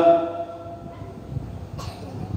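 A man's long-held chanted note fades out at the start, then a pause with low room noise and a short cough near the end.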